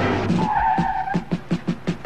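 Car tyres squealing briefly, about half a second in, over background music with a fast, even beat.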